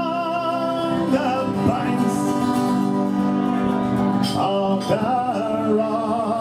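A male folk singer singing live with a strummed acoustic guitar, holding long notes with a wavering vibrato.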